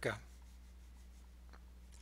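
Very quiet room tone with a steady low electrical hum, and one faint click about one and a half seconds in.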